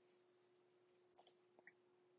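Near silence: faint room tone with a low steady hum and a single short click a little past halfway.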